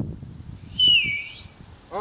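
A loud finger whistle, blown with fingers in the mouth: one shrill note held for under a second that drops in pitch at its end and cuts off.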